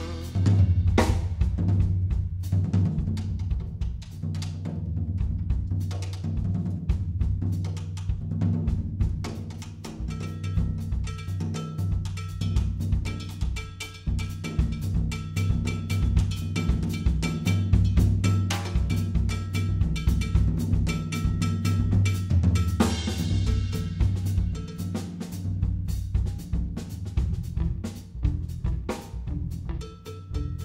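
Live band's rhythm section: a drum kit playing a busy pattern of snare and bass drum hits over a steady electric bass line, with keyboard chords coming in faintly about a third of the way through. The horns have dropped out.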